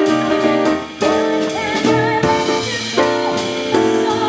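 Small live band playing a slow jazz-style number: held piano chords over a drum kit, with a brief dip in level just before a second in.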